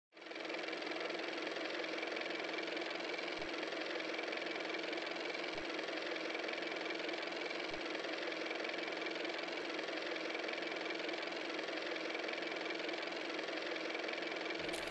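A steady mechanical whir with a constant hum, fading in at the very start and holding level throughout, with a few faint low clicks about two seconds apart.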